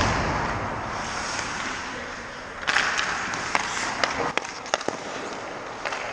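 Hockey skates scraping and carving on rink ice, with a scraping burst about three seconds in and then several sharp clicks of stick and puck, all echoing in the arena. The echo of a loud impact just before dies away in the first second.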